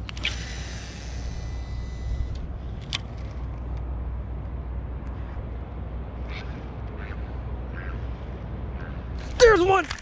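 Baitcasting reel's spool whirring for about two seconds as a lure is cast out, then a sharp click about three seconds in, over a steady low rumble. A man's short exclamation near the end.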